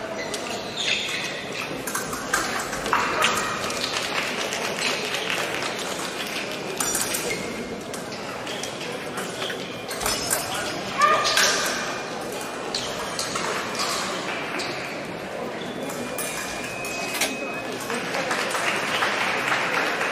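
Echoing fencing-hall din: épée blades clinking and ringing in short, irregular strikes from bouts on several pistes. The louder clash comes about eleven seconds in, over a wash of voices and shouts.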